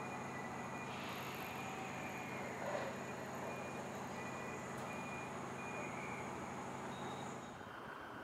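Steady outdoor background noise of vehicle traffic and the rail yard, with no distinct train passing. Faint short high beeps repeat through most of it.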